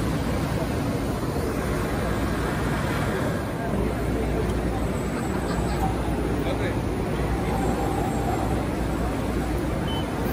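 Steady exhibition-hall ambience: a constant wash of crowd babble and machinery hum, with no single sound standing out. The level dips briefly about three and a half seconds in.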